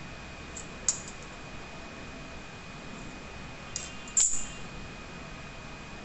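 Two brief, sharp clicks of small hard craft tools being handled against the worktop, about a second in and again near four seconds in, the second the louder, over a steady faint hiss.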